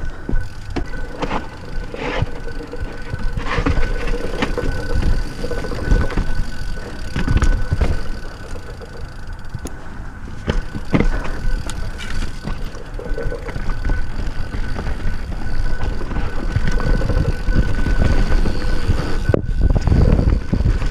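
Yeti SB6 full-suspension mountain bike riding down rocky dirt singletrack: tyres running over dirt and stones, with frequent knocks and rattles as the bike hits bumps, and wind rumbling on the microphone.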